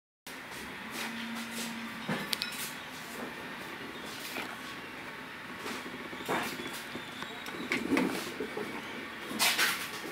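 Hands handling a polyester dog collar and leash: irregular small clicks and knocks from the plastic side-release buckle and fittings, with light rustling of the webbing.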